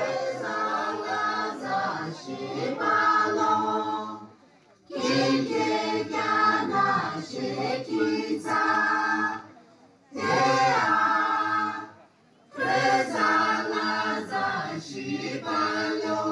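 A group of voices singing together, unaccompanied, in a traditional Naga folk chant. The song comes in phrases a few seconds long, with three short breaks between them.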